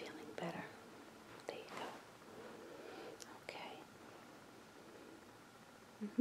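Soft rustling of a plush blanket as a hand tucks and smooths it: a few brief swishes in the first few seconds, then quieter.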